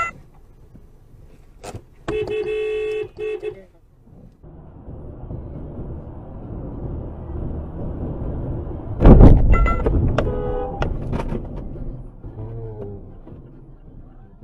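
A car horn sounds for about a second and a half, then road noise from a car driving at speed builds. About nine seconds in comes a sudden loud low thump, followed by clicks and short tones.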